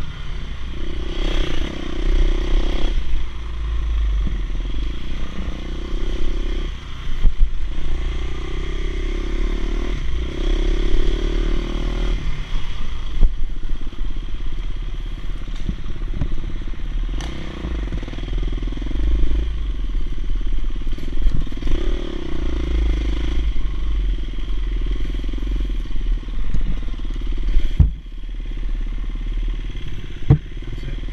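Dirt bike engine running on a wooded trail ride, its revs rising and falling every second or few with throttle and gear changes. A few sharp knocks come over the bumps, the loudest near the end.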